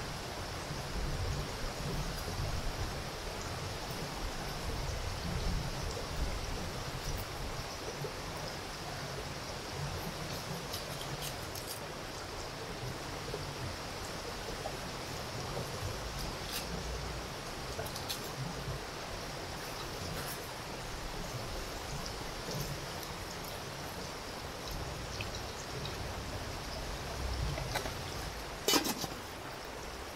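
A river stream running steadily, with a few light clicks of a knife cutting vegetables over the pot. Near the end comes a sharp metallic clank with a short ring as the lid is set on the stainless-steel cooking pot.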